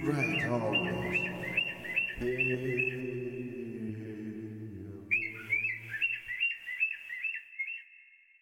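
Bird chirps in two quick runs of short, hooked calls, about two to three a second, with a pause in the middle. They play over the last held low chord of the song, which fades out about six seconds in, so the chirps end alone as the track finishes.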